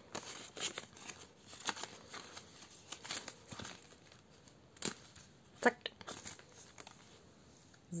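Soft rustling and crinkling of a clear plastic zip pouch in a ring-binder budget planner as money is put into it, with a few light clicks.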